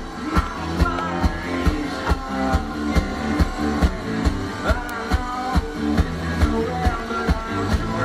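A live rock band playing a song with drums, bass and electric guitars. The drums keep a steady, driving beat of a little over two hits a second.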